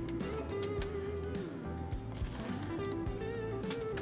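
Background music: a guitar playing held, bending notes over a bass line and a steady beat.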